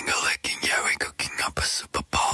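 A break in a K-pop song where the beat drops out and a male voice whispers a short spoken line in a few clipped phrases, with no backing music.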